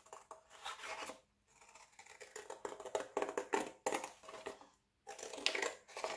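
Scissors cutting through thin cereal-box cardboard: runs of crisp snips in short bursts, broken by two brief pauses.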